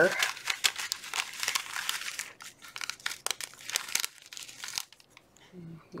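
Clear plastic bag crinkling and crackling irregularly as hands rummage through the paper cut-outs inside it, stopping about a second before the end.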